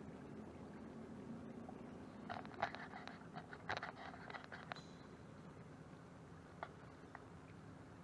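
Faint steady hum of a small electric trolling motor pushing an aluminium canoe along, with a quick cluster of clicks and knocks between about two and five seconds in and one more click a little later.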